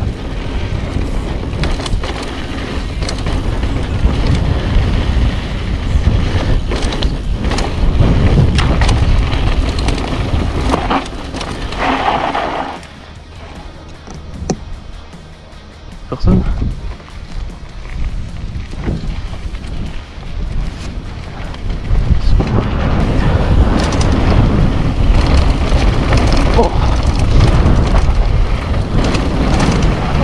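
Wind rushing over a bike-mounted action camera's microphone as a mountain bike descends a dirt trail, with tyres on loose dirt and the bike rattling and knocking over bumps. It quietens briefly a little before halfway, then comes back as loud.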